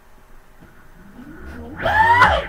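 IPM electric motor driven by a 24-MOSFET VESC controller spinning up under load with MTPA enabled: a whine that rises in pitch and grows louder from about a second in.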